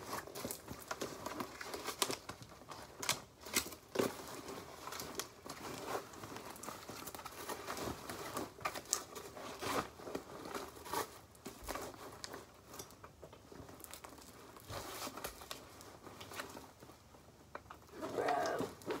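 Rustling and crinkling with scattered light knocks and clicks, from a fabric backpack being handled and a plastic binder and school things being packed into it.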